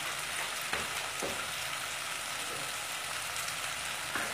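Chopped onions, fried golden brown, sizzling steadily in hot oil in a kadai, with ground turmeric and coriander just added on top. A faint tick or two comes about a second in.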